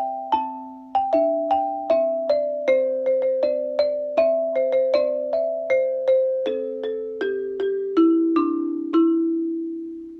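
Alto xylophone with wooden bars, played with soft-headed mallets: a tune in two parts, a lower note sounding under the melody, struck about two to three times a second. The tune moves lower toward the end, and the last note, struck about a second before the end, is left to ring out.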